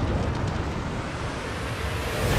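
Cinematic sound design from a book trailer: a deep, steady rumble with a wash of noise over it, the low atmospheric bed of an epic score. It begins to swell again near the end.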